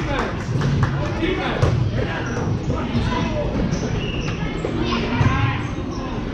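Basketball being dribbled on a gym floor, with many voices talking and calling out across the gym.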